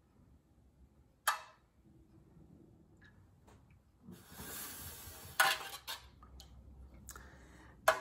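Melted soy wax being stirred in a metal pouring pitcher: the stirring utensil knocks and scrapes against the pitcher. There is a sharp clink about a second in, a longer scraping stretch from about four to six seconds, and a few lighter knocks after it.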